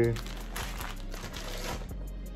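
Crinkling of a plastic bag of light brown sugar being handled and set down, a dense crackle that dies away shortly before the end.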